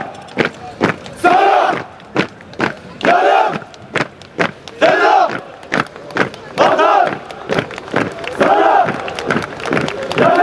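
A column of marching soldiers shouting in unison, a group cry about every two seconds, with the sharp stamps of their boots between the shouts.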